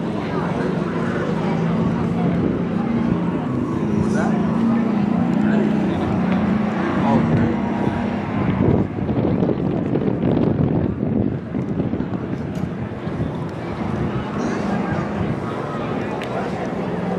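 Engine of a battered demolition derby car running, louder and rougher about nine seconds in, over indistinct background voices.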